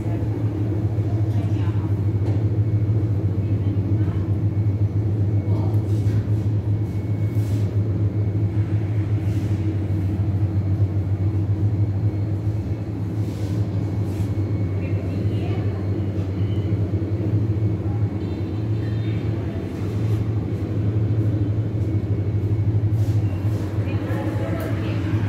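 Steady low machine hum, unbroken throughout, with faint background voices and occasional light clicks.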